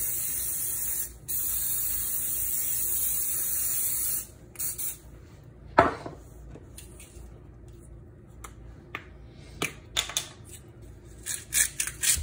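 Aerosol cooking spray hissing onto a grill plate in a long steady spray, broken briefly about a second in and stopping about four seconds in, followed by two short spurts. A sharp knock follows about six seconds in, then a few light clicks and taps.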